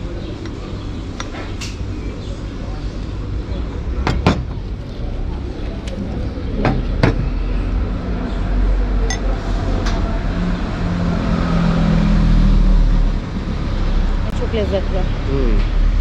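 Steady street traffic rumble, swelling as a vehicle passes about ten to thirteen seconds in, with a few sharp glass clinks around four and seven seconds in.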